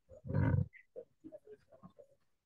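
A person's short, loud, rough vocal burst close to a video-call microphone, followed by a few softer short sounds.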